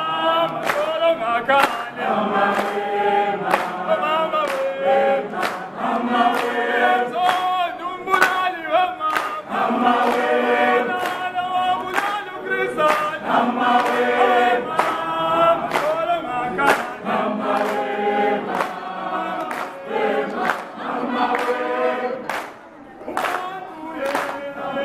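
A choir of mixed voices singing in harmony, with long held notes and a steady, sharp beat running under the singing.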